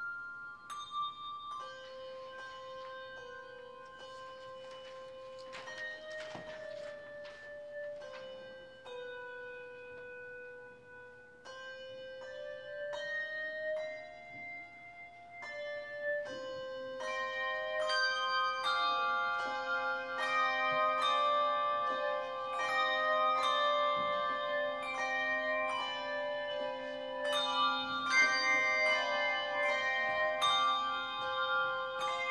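Handbell choir playing a piece, the bells ringing sustained notes that overlap. It starts sparse and fairly quiet with a slow melody line, then fills out with fuller chords and grows louder a little past halfway.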